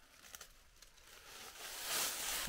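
Faint rustling and light crackling of dry fallen leaves, growing louder toward the end.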